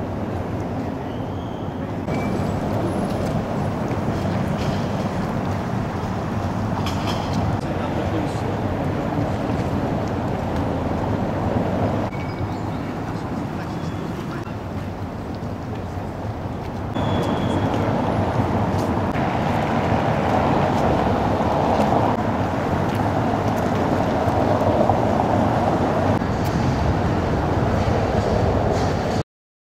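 Outdoor city ambience: a steady wash of distant voices and traffic hum, with a few short high chirps now and then. The background level jumps a couple of times as the shots change.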